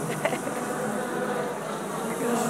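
A steady buzzing motor drone from the passing flower-parade float, with a brief high chirp about a quarter second in.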